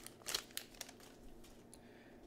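Faint crinkling and soft ticks of a trading-card pack wrapper and cards being handled, mostly in the first second.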